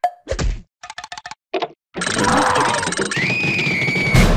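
Cartoon sound effects: a thud early on, a quick run of short clicks, then from about halfway a long noisy rush with a high whistling tone over its last second.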